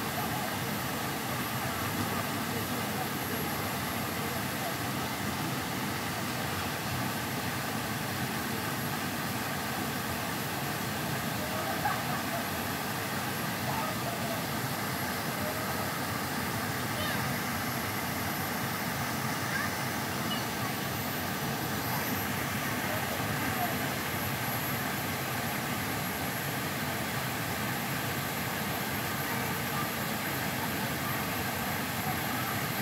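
Steady rushing of a small waterfall pouring into a pool, with faint voices of adults and children bathing in it.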